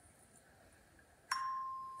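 A single game-show bell ding, about a second in after a near-quiet pause, one clear steady tone that rings on and slowly fades. It signals a correct price lighting up on the game board.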